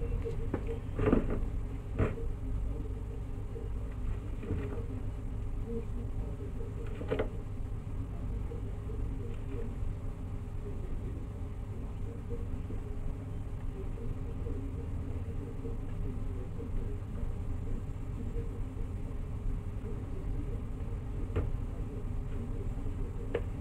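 A steady low hum throughout, with a few light clicks and taps about one and two seconds in, again around seven seconds and near the end: a metal spoon knocking against the bowl and the plastic mould as a crumbly rice-flour and coconut mixture is spooned across.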